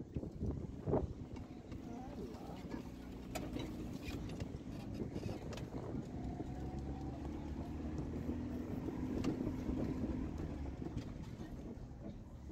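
Car driving slowly over a rough dirt track, heard from inside the cabin: a steady low engine and road rumble with a few short knocks and clicks.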